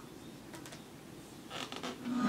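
Faint handling noise as a small dry-erase whiteboard is picked up and turned, with soft scrapes and rustles about half a second in and again near the end.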